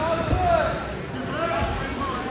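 Two dull thumps of wrestlers' bodies hitting the mat during a takedown, about a third of a second in and again near the end, with voices shouting.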